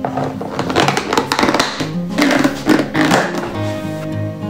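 A plastic food container's lid being fitted and pressed shut: a quick run of clicks, taps and scrapes over about three seconds. Background music plays steadily underneath.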